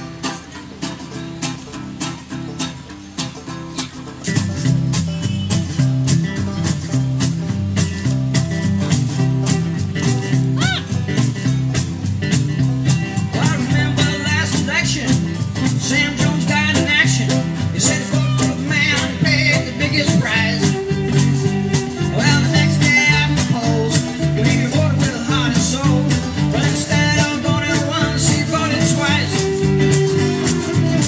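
Jug band playing an upbeat instrumental passage on guitars, resonator guitar, banjo, fiddle and upright bass. It starts light, and the full band with a steady walking bass comes in about four seconds in.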